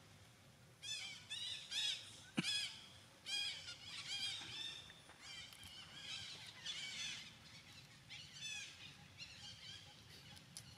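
Baby monkey squealing: a long run of high-pitched, rising-and-falling squeals in quick clusters, with one sharp knock about two and a half seconds in.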